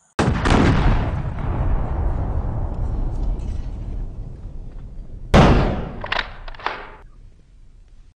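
Cinematic boom sound effect for an animated logo card: a heavy deep hit that rings down slowly for about five seconds, then a second heavy hit followed quickly by two lighter ones.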